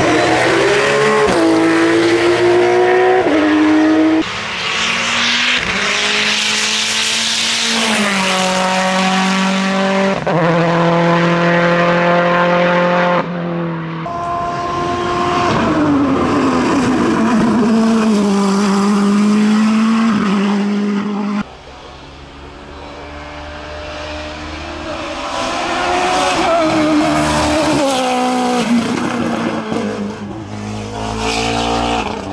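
Racing cars at full throttle on a hillclimb, one after another. First a Porsche 911 GT3 Cup's flat-six launches from the start, its note climbing in steps with quick upshifts. After abrupt changes in the sound, open sports-prototype racers follow, their engine notes rising and falling with gear changes.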